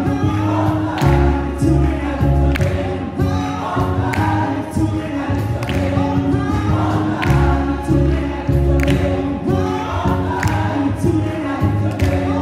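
Group of voices singing an upbeat gospel-style song with band accompaniment: bass notes and a steady beat of drum hits under the singing.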